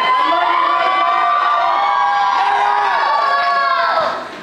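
Audience cheering, many high voices in long overlapping calls, dying away near the end.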